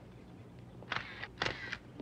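Single-lens reflex camera shutter firing: two sharp clicks about half a second apart, a second in, then a fainter click.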